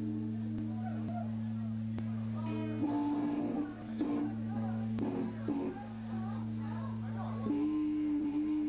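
An electric guitar drone through the amplifiers: a steady low held note sounding the whole time, with a few short strums and scraps of talk over it about three to six seconds in.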